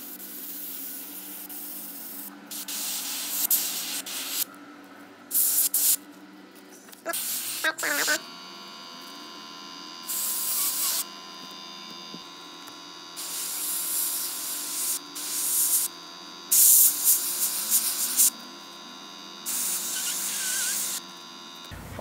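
Airbrush spraying paint in about seven short hissing bursts of one to two seconds each, over the steady hum of its air compressor.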